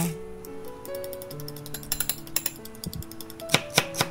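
Hand-twisted salt grinder working, a rapid run of small ratcheting clicks, then a few knife chops on a wooden cutting board near the end, over background music.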